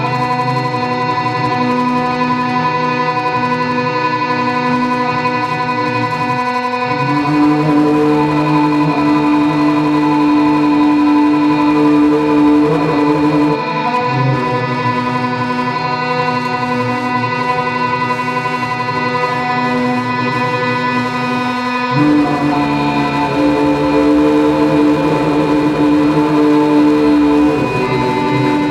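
Live electronic drone music: layered sustained tones held steady, moving to a new set of pitches three times.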